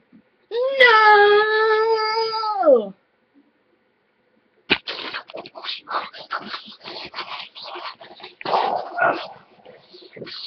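A long, high, steady vocal cry starting about half a second in and sliding down in pitch at its end. After a pause there is a click, then several seconds of irregular scratchy noise.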